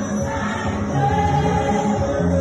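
Church worship singing: many voices singing a gospel song together in chorus.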